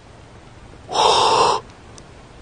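A single loud animal call, about two-thirds of a second long, starting about a second in against a quiet outdoor background.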